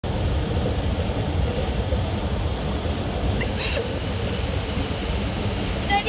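Steady low rumble of a moving escalator and the hall around it, with a brief faint voice about halfway through.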